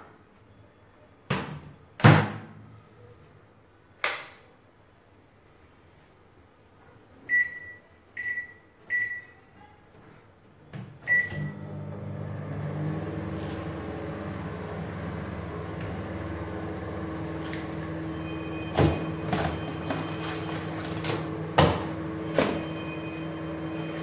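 Microwave oven being set and started: a few clunks, three short keypad beeps and a start beep. Then the oven runs with a steady low hum, with a few knocks over it near the end.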